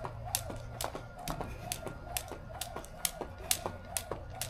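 A jump rope slapping a concrete patio as it is skipped, a sharp slap about twice a second in an even rhythm.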